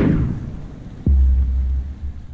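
Cinematic logo sound effect: a whoosh that sweeps down in pitch, then a deep boom about a second in that holds as a low rumble.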